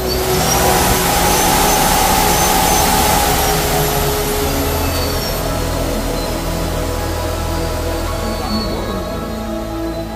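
Electric hub motor of a Recon e-bike spinning its rear wheel off the ground under throttle, a rushing sound with a thin whine. It is loudest for the first four seconds or so and then eases off a little. The bike is running again after a contactor was fitted to cure its cutting out. Background music plays underneath.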